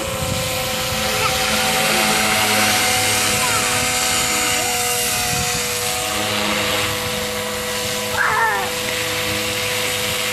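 Radio-controlled Chase 360 helicopter flying overhead, its rotor and motor running with a steady hum and whine. A brief voice comes about eight seconds in.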